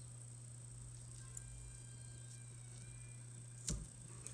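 Quiet room tone: a steady low hum with faint thin tones over it, broken near the end by one sharp click.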